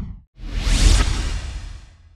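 Whoosh transition sound effect. The tail of one whoosh dies away at the start, then a second swell of noise rises to a peak just under a second in and fades out.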